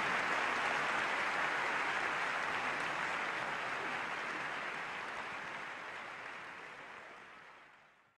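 Audience applauding, an even patter of many hands that gradually fades away.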